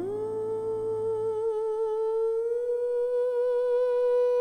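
A woman's wordless voice swoops up into one long held high note with vibrato, slowly swelling, over a low drone that fades out about a second and a half in.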